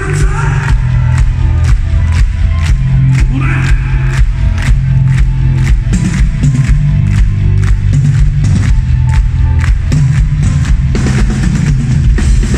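Live rock band playing loudly through a concert PA, with a heavy bass line and a steady beat, while the audience claps along in time.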